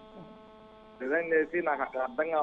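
Steady electrical hum, a buzz of several fixed tones, heard in a pause between speech, before a man's voice resumes about a second in.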